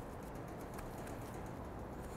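Faint light patter of dry barbecue rub being sprinkled and patted onto a raw brisket point, a scatter of small soft ticks.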